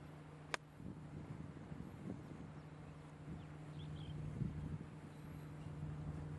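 A pitching wedge strikes a golf ball about half a second in: one sharp, crisp click. Under it runs a steady low outdoor hum.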